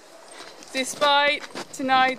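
Speech: a woman talking, starting about a third of the way in after a moment of low background noise.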